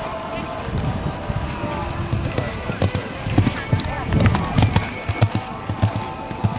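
Hoofbeats of a cantering warmblood horse on a sand arena: a run of dull thuds, a few per second, that grow louder about halfway through.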